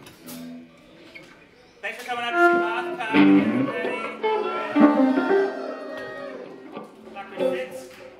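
A band playing improvised live music led by electric guitar, with many pitched, sliding notes. It starts sparse and quiet, then swells into a dense, loud passage about two seconds in, which thins out toward the end.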